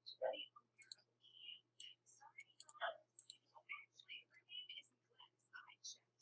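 A person whispering faintly in short broken fragments, with small mouth clicks.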